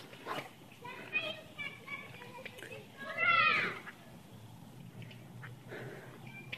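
High-pitched voices that sound like children, with short calls and a louder, higher call about three seconds in.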